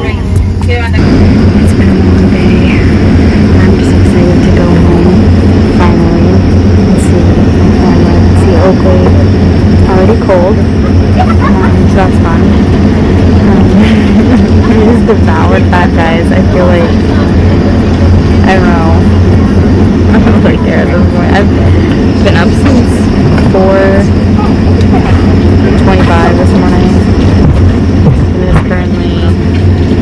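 Steady, loud hum of a jet airliner's cabin, with indistinct voices talking over it.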